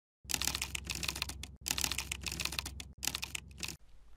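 Fast typing on a computer keyboard: rapid clicking keystrokes in three runs with short breaks, over a low hum, stopping just before the end.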